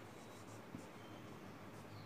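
Faint strokes of a marker pen on a whiteboard as a word is written, over a steady low hum, with a light tick about three-quarters of a second in.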